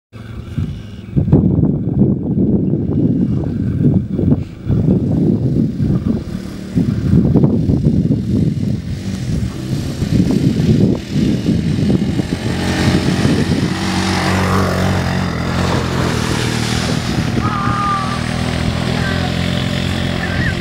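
ATV engine running under load, uneven and surging for about the first twelve seconds, then holding a steady pitch. Through the second half a hiss of water spray from the towed wakeboard rises over it.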